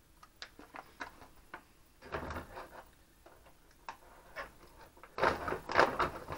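Scattered light clicks and handling noises. About five seconds in comes a louder crinkling rustle as a mylar bag of PVA filament is handled.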